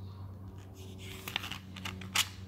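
Paper rustling and crinkling as the pages of a printed owner's manual are handled, a few short crackles in the second half, over a steady low hum.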